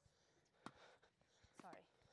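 Faint tennis ball impacts during a soft volley rally: two sharp pops less than a second apart.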